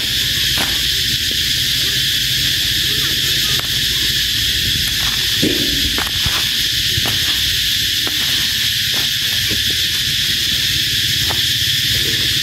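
A steady high-pitched insect drone over a low hum, with a few faint clicks.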